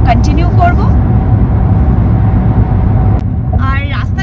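Steady low road and engine rumble heard from inside a car moving at highway speed. Voices are heard briefly at the start and again near the end.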